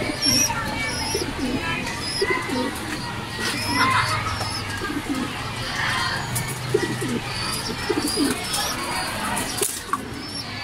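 Several domestic racing pigeons cooing over and over in their loft cages, with short high chirps from other birds.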